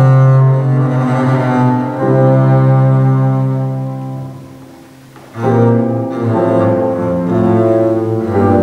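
Double bass played with a bow in a slow classical melody of long held notes. About five seconds in, one note dies away almost to silence before the next is bowed in strongly.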